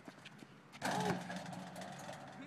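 A distant voice calling out once about a second in, over outdoor background hiss.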